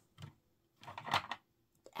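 Plastic toy car being knocked and handled by hand: a faint low knock just after the start, then a brief noisy handling sound about a second in.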